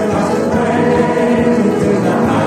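A choir of student voices singing a gospel praise-and-worship song, holding long notes together.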